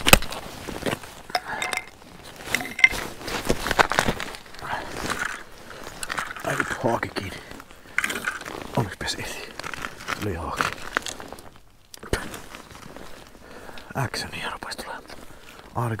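Handling noises on the ice: scattered clicks, knocks and crunches from clothing and fishing gear being moved about, with low indistinct talk in places.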